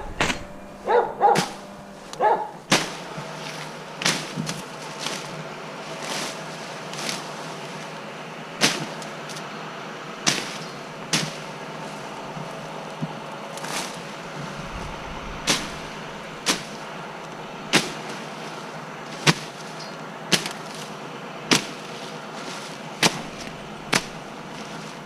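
Vines and brush snapping and rustling as someone pushes through dense undergrowth, with sharp cracks every second or two over a steady low hum. A dog barks a few times near the start.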